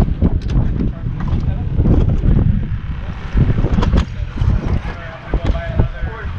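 Wind buffeting the microphone, a steady low rumble, with scattered sharp clicks and knocks of handling.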